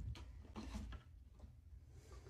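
Faint handling noise: a few soft clicks and knocks of small plastic toy pieces being moved by hand.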